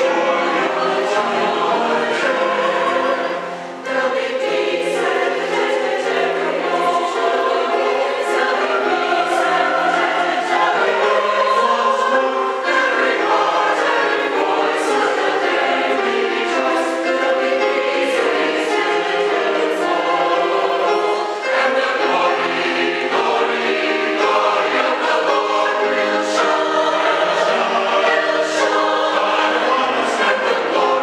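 Mixed church choir of men and women singing an anthem in sustained, full chords. There are short breath breaks between phrases about four seconds in and again around twenty-one seconds.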